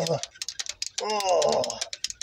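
Quick light clicking from the hand primer pump on a Ural truck's diesel injection pump being worked by hand, priming the fuel system after the truck has stood for a long while.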